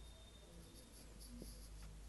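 Marker pen writing faintly in short strokes, its tip rubbing over the writing surface.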